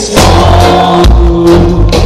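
Live reggae band playing with no vocals: a heavy bass line, drum kit, guitar and keyboards, loud and dense.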